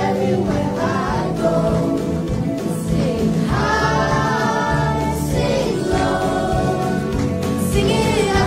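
A children's group singing a gospel action song with instrumental accompaniment.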